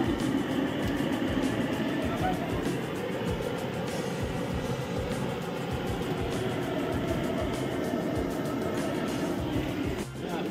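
Pakoras deep-frying in a kadhai of hot oil: a steady, crackling sizzle as batter is dropped in by hand.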